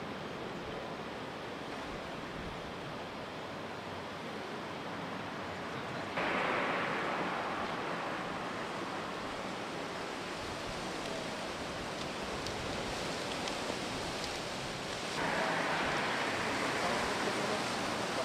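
Steady outdoor street ambience at a police scene, a constant hiss of background noise. It steps up abruptly and gets brighter about six seconds in, eases off, then jumps up again near the end.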